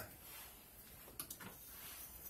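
A few faint clicks and taps of multimeter test probes being handled and set down, over a low room hiss.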